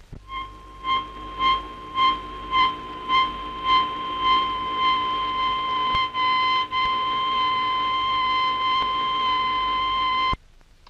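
Oboe blind-bombing guidance tone, a high-pitched beep repeating about twice a second that merges into one steady unbroken note about halfway through. The beeps mean the bomber is off the constant-range track and the steady note means it is on it.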